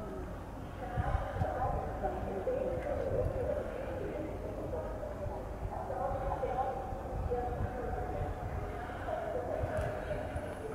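Faint, indistinct voices of people talking in the background, with a steady low rumble underneath.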